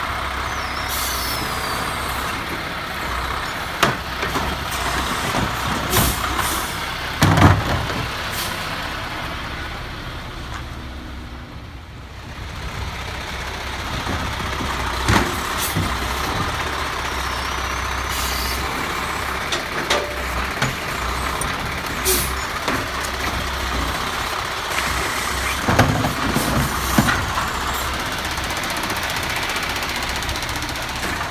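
Peterbilt side-loader garbage truck running its engine and hydraulics as its Autoreach automated arm lifts a cart, dumps it and sets it back down. The engine eases off about ten seconds in, then picks up again. Sharp clanks and knocks from the cart and arm, and a few short air hisses, are heard along the way.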